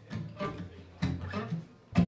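Acoustic guitar opening a song with a few plucked notes and chords, spaced about half a second apart. A sudden loud hit comes right at the end, just before the sound cuts off.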